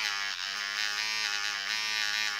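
Small battery motor of a cheap 5-in-1 electric nail file pen running with a pink grinding-stone bit, a steady buzz. The pen shakes with heavy vibration, which the owner is unsure is normal and puts down to poor build quality.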